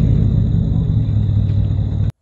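Lifted ex-police car's 4.6 V8 engine and exhaust running at steady revs: a loud, deep, even rumble.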